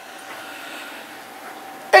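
Quiet room tone: a steady hum with a faint, even whine under it. A man's voice comes back in right at the end.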